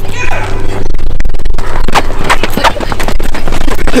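Running footsteps on a rubber track, quick even footfalls from about a second in, with wind rumbling on the microphone of a camera carried at a run.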